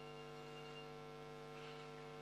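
Faint steady electrical mains hum from the podium microphone and sound system, a low drone with several steady pitches stacked above it.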